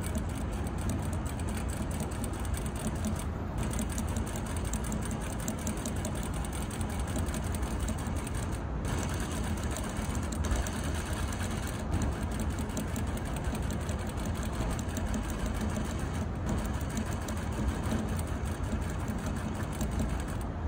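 Juki industrial single-needle sewing machine stitching through denim, running steadily with rapid needle strokes, with a few brief breaks.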